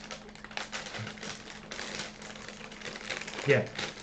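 Plastic blind-bag packets crinkling and tearing as they are opened by hand, a steady string of small sharp crackles.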